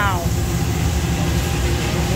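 A 55 lb commercial coffee roaster running: a steady low rumble of its blower and motor, with the cooling tray's stirring arm turning a batch of freshly roasted beans.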